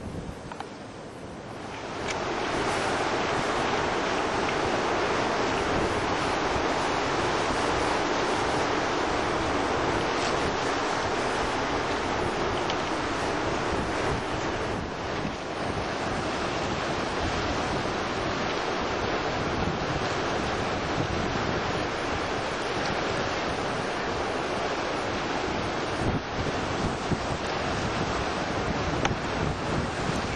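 Surf breaking on a pebble beach, with wind noise on the microphone. The sound comes in loud about two seconds in and then stays steady.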